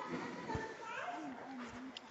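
Faint distant human voices talking and calling, with a soft low thump about half a second in.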